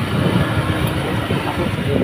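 A small motorbike engine running steadily, with a low rumble of street traffic.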